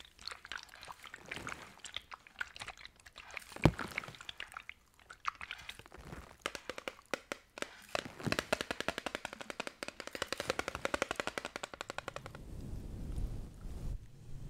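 Fingernails tapping on a Nivea bottle held against a plastic-wrapped microphone. There are scattered sharp taps at first, then from about eight seconds a fast, even run of clicks for about four seconds. Near the end the clicks stop and a low rumble of handling on the microphone takes over.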